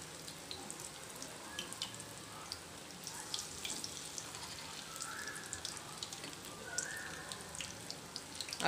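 Oil sizzling steadily in a frying pan as egg-coated chicken kebabs fry, with many small scattered crackles and pops.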